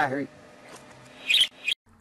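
A voice trails off at the start, then a budgerigar gives two short, high chirps about a second and a half in, and the sound cuts out abruptly.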